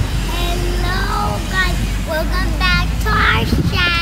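Young girls' voices talking in high, lilting phrases, starting abruptly, over a steady low rumble.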